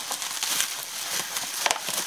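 Plastic bubble wrap crinkling and rustling as it is handled and pulled about, with one sharp click near the end.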